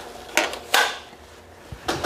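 A 1/16 scale plastic and die-cast model tractor being handled and lifted off its stand to be turned over: two short scrapes or clacks within the first second, then a knock near the end.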